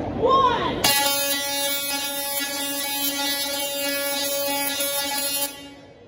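Tesla coil firing: a loud, harsh buzz at one steady pitch that starts about a second in, holds for about four and a half seconds and cuts off suddenly.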